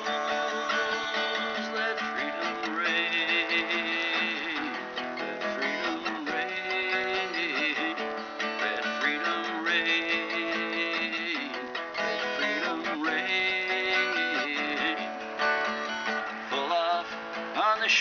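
Instrumental break in a folk-rock song: strummed acoustic guitar chords under a melodic lead line with wavering, bending notes, and no singing.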